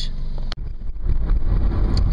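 Low, steady rumble of a car heard from inside the cabin while driving. It cuts out sharply for an instant about half a second in, then comes back louder.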